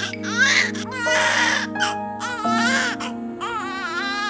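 Newborn baby crying in repeated wavering wails, about one a second, over background music with sustained chords.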